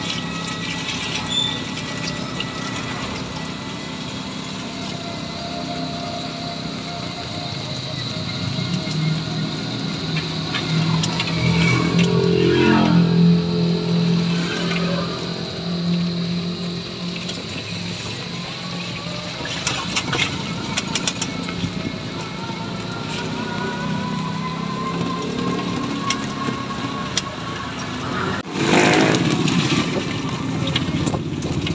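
Ride noise from inside a canopied electric trike on a wet street: tyre and traffic noise under a steady high whine, with pitched tones gliding up and down. It is loudest around the middle, and a brief loud burst comes near the end.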